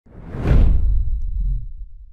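Logo-intro whoosh sound effect with a deep low rumble, swelling over about half a second and then fading away over the next second or so.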